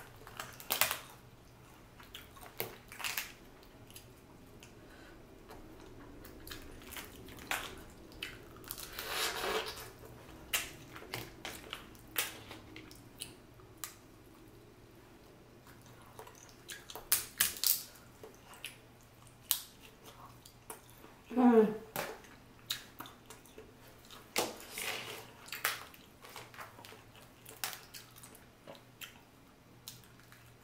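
Close-miked boiled crawfish being peeled and eaten by hand: shells cracking and snapping in many short sharp clicks, with sucking and chewing. A brief hummed vocal sound comes about twenty-one seconds in.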